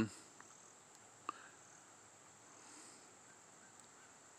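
Faint, steady, high-pitched insect trill, with one short sharp chirp about a second in.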